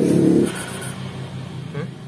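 A motorcycle engine running, its note dropping back to a quieter, lower idle about half a second in.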